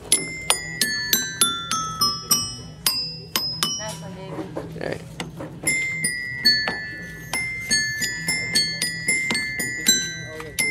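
Children's pull-along toy xylophone struck repeatedly with a plastic mallet, each hit giving a bright ringing note from its metal bars, the notes stepping up and down the scale at about three strikes a second, with a short lull around the middle.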